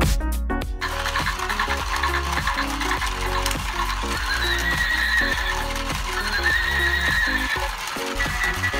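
Recorded horse whinny sound effects, heard twice as wavering high calls over music, from a battery-powered walking pegasus toy.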